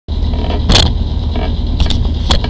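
Steady low rumble with two brief rustling knocks, the stronger one under a second in, as the webcam is handled and moved.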